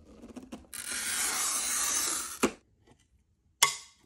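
A glass cutter scoring a sheet of stained glass along a ruler: a steady, gritty scratch lasting about a second and a half that ends in a sharp click, followed by another sharp click about a second later.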